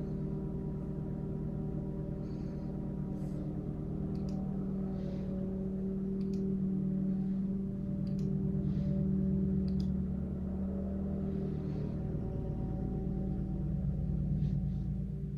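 A steady low droning hum made of several sustained tones that swells a little midway, with faint scattered ticks over it.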